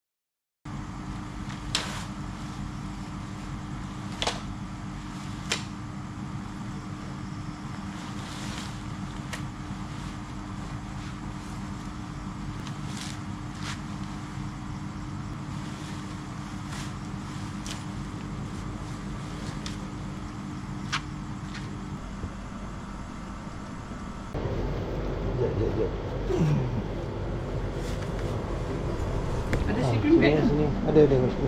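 Green dome tent being pitched by hand: a few sharp clicks of the tent poles and handling of the fabric over a steady mechanical hum. Near the end the hum grows louder and faint voices come in.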